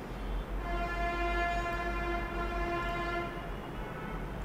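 A single steady horn-like tone with many overtones, starting about half a second in and holding at one pitch for about three seconds before it stops, over a low background hum.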